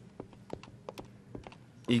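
Sparse, irregular keystrokes on a computer keyboard, a few quiet clicks a second.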